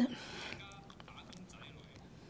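Faint speech, a voice heard low in the background, with a few soft clicks.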